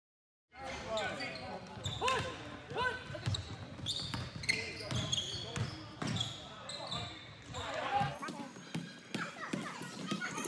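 Live basketball game in a large, echoing gym: a ball bouncing on a hardwood court, short high sneaker squeaks and players' indistinct shouts. The sound cuts in about half a second in.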